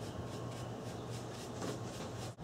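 Wet paintbrush stroking a vinegar-and-steel-wool solution onto a cedar board: quiet, repeated brushing strokes over a steady low hum.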